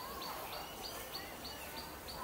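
A bird repeating a short, high, dropping note about three times a second over steady outdoor background noise.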